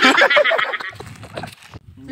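A man laughing loudly in quick, high pulses that sound like a horse's whinny, fading out over about a second.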